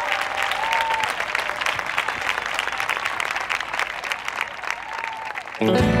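Crowd applauding in a steady patter of clapping. Near the end, a music track starts abruptly and louder.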